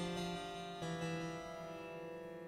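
Harpsichord notes played through Phonolyth Cascade's allpass diffusion reverb, set to ten diffuser stages. One note sounds at the start and another about 0.8 s in, each ringing on in smeared, echo-like repeats. The Shape control is being turned up, which moves the effect from a delay-like bounce toward a reverb.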